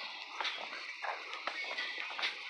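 Faint footsteps on a paved path, about two steps a second.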